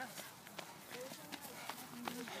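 A runner's footsteps striking a dirt trail, coming close and passing, about three strides a second.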